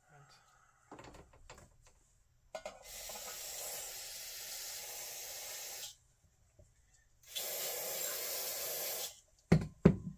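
Aerosol spray can sprayed through its straw nozzle onto a carburetor part being cleaned, two long hissing bursts of about three seconds and two seconds. A few sharp clicks and knocks from handling the parts come near the end.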